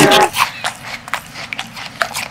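A shouted "away!", then a quick, irregular run of light tapping clicks, like small footsteps, that goes on to the end.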